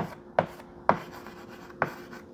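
Chalk writing on a blackboard: four sharp taps as the chalk strikes the board, with light scratching between the strokes.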